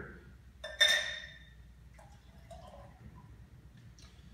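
A single glass-on-glass clink with a brief ring about a second in, then beer from a glass growler pouring faintly into a pint glass.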